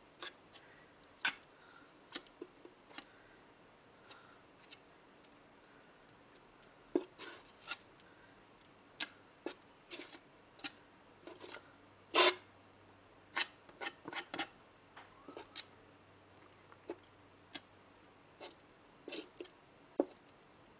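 Metal palette knife scraping heavy acrylic gel across a plastic stencil on a panel: irregular short scrapes and clicks, the loudest about twelve seconds in.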